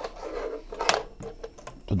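Hands handling wires and connectors while reconnecting an energy meter's terminals: irregular rattling with one sharp click a little under a second in.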